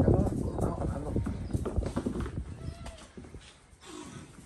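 Goat kids bleating, with hooves clattering on a concrete walkway; loudest at first and dying away in the second half.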